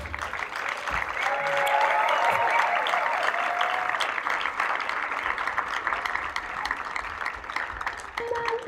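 Theatre audience applauding steadily at the end of a song-and-dance number.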